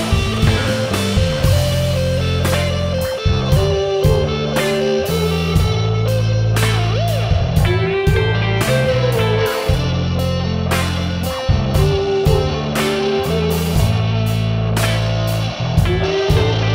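Rock band playing an instrumental passage: an electric guitar line with several bent, sliding notes over low sustained bass notes and steady drum and cymbal hits.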